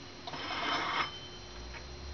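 Metal scraping with a faint high ringing, lasting about a second, as the head of a model 60 parking meter is handled and lifted off its post.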